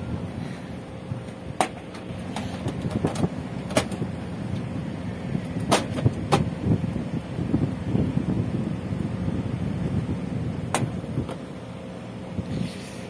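Sharp plastic clicks and knocks, about five, as the plastic service-valve cover is pressed onto the side of a split-type aircon outdoor unit and screwed down, over a steady low hum.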